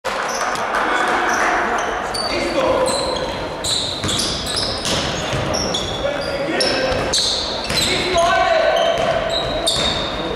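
Basketball shoes squeaking on a hardwood gym floor in many short, high-pitched chirps, with a basketball being dribbled, in a large reverberant hall. Players' voices can also be heard.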